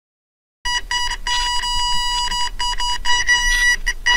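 Electronic beeping starting a little over half a second in: one steady high tone switched on and off in uneven lengths, like a buzzer.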